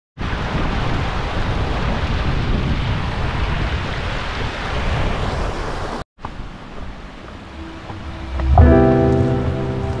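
Mountain stream rushing over rocks, a steady noise that cuts off suddenly about six seconds in. Background music with sustained tones swells in near the end.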